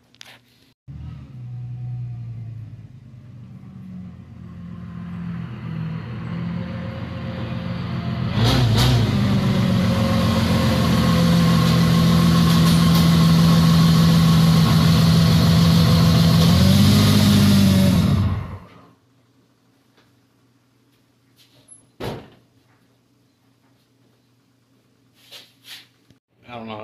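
The Jeep Grand Cherokee's supercharged 4.0-litre engine running, rising steadily, then much louder with a rushing noise from about eight seconds in. The sound cuts off sharply about eighteen seconds in. A single sharp knock follows a few seconds later.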